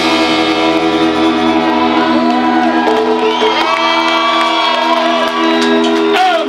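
Live rock band with saxophone and electric guitars holding a long sustained chord, with a singer's wavering voice coming in over it about two seconds in and shouts from the audience.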